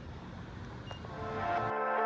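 Low, rumbling outdoor background noise with a short high beep about a second in. Soft background music with sustained tones fades in over it, and the outdoor noise cuts off abruptly near the end, leaving only the music.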